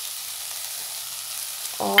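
Tomato-onion masala with freshly added green peas sizzling steadily in a nonstick kadai over a low gas flame.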